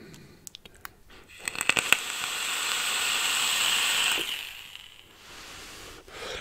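A few clicks from the mod's buttons, then the coil of a rebuildable dripping atomizer firing at 130 watts on an Eleaf iStick Mix mod: a steady hissing sizzle with crackles as e-liquid vaporises and air is drawn through, lasting about two and a half seconds and fading away about four seconds in.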